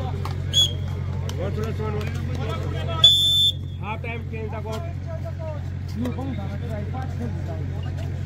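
Referee's whistle in a kabaddi match: a brief pip under a second in, then a shrill half-second blast about three seconds in. Both sound over spectator chatter and a steady low hum.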